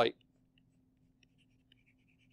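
Faint, intermittent scratching of a pen stylus on a drawing tablet as brush strokes are scribbled in, over a low steady hum.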